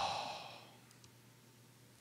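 A man's drawn-out, sighing "oh" fading into a breathy exhale over the first half second or so, then near silence.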